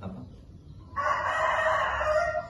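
Rooster crowing: one long crow starting about a second in.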